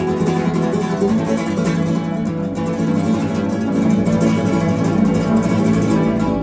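Two flamenco guitars played together in rapid strummed chords, steady and loud throughout.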